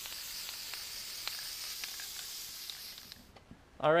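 Aerosol spray-paint can hissing in one continuous spray onto willow branches, stopping a little after three seconds in.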